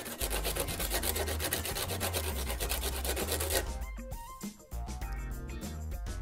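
Copper crimp lug held in pliers being scraped back and forth in quick strokes on a coarse sandpaper sanding stick, sharpening its end into a cutting edge. The strokes stop about three and a half seconds in.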